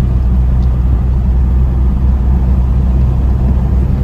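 Hemi-engined truck driving along a road, heard from inside the cab: a steady, loud, low engine and road drone.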